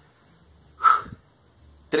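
A man's single short, breathy exhale, a sharp puff of breath about a second in.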